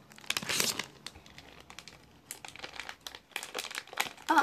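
Plastic candy packet crinkling as it is handled, with a loud burst of crackling about half a second in, then scattered crackles.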